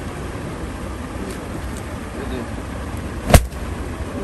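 A single loud, sharp bang about three seconds in, over a steady low background rumble.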